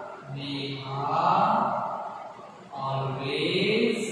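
A man's voice drawing out words slowly in a chant-like, sing-song way, in three long stretches.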